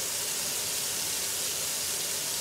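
Minced-meat patties frying in oil in a large frying pan, giving a steady sizzle.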